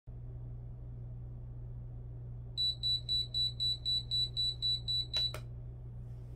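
Digital bedside alarm clock (a WILIT LED lamp with a built-in clock) sounding its alarm: a rapid run of high, pure beeps, about four to five a second, starting a few seconds in and cut off near the end by a couple of clicks, over a steady low hum.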